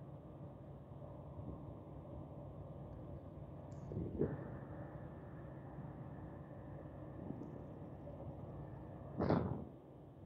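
Two short scraping swishes, about four and nine seconds in, the second louder, as wire insulation is stripped while preparing the trailer light harness wires, over a steady low hum.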